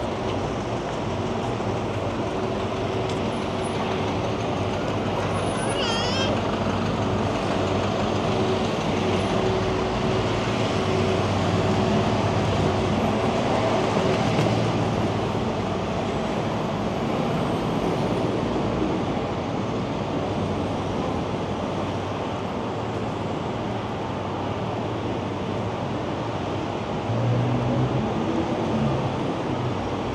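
Downtown street traffic: a steady hum of passing and idling vehicles. A brief high wavering sound comes about six seconds in, and a louder low engine rumble near the end.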